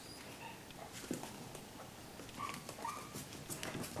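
Faint, short whimpers from a young puppy, several of them close together a little past halfway, with a few soft clicks between.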